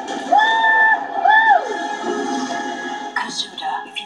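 Trailer soundtrack playing from a screen in the room: music with two long held tones, the first lasting under a second and the second shorter, each sliding up into its pitch and down out of it.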